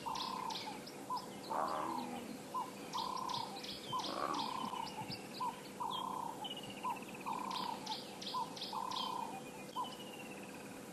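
Birds calling in the bush: a short mid-pitched note repeated about once a second, with bursts of quick high chirps over it. Two brief, lower, rougher calls come in about one and a half and four seconds in.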